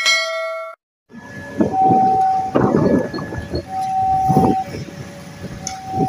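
A short electronic chime, then after a brief gap a railway level-crossing warning alarm sounding, two tones alternating about once a second, over traffic and wind noise.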